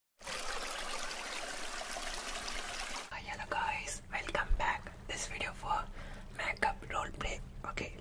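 A steady hiss-like noise for about three seconds, then a man whispering close into a microphone, ASMR-style.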